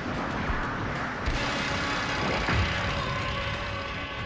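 Anime fight-scene sound effects: a continuous dense rush of noise as the fighters clash, with a faint musical score underneath and a short pitch sweep about two and a half seconds in.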